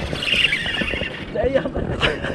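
Baitcasting reel's drag buzzing for about the first second as a hooked fish pulls line off the spool, followed by a short voice near the end.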